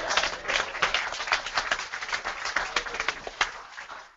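Audience applauding in a room, many hands clapping at once, the clapping thinning out and fading near the end.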